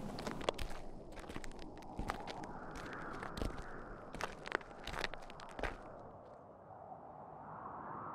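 Footsteps on a dirt road: a string of irregular crunching steps that die away about six seconds in, leaving a faint steady background.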